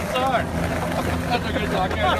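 City street background: a steady low hum of traffic and engines, with a brief stretch of voices about a second in.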